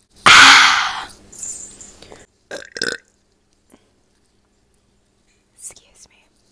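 A person burping very loudly into a close earphone microphone, one long rough burp of about a second that fades out, followed by two short vocal sounds.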